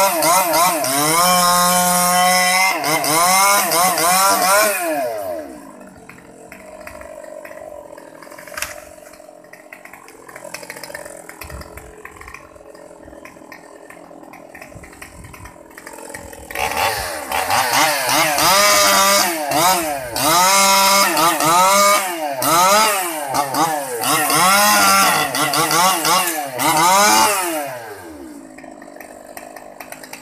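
Stihl 020T top-handle two-stroke chainsaw at high revs cutting into a mango trunk for the first few seconds, then dropping to idle. From about 17 seconds in it is revved up and down repeatedly, about once a second, then settles back to idle near the end.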